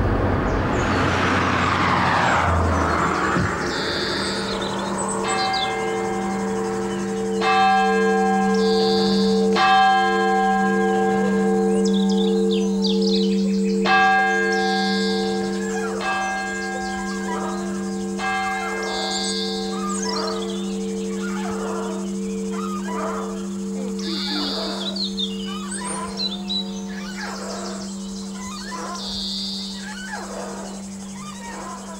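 Church bells ringing: several overlapping bell strokes over a steady hum during the first two-thirds, the ringing thinning out later, with birds chirping toward the end.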